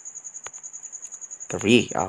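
A cricket trilling steadily in a high-pitched, evenly pulsing tone. A man's voice speaks one word near the end.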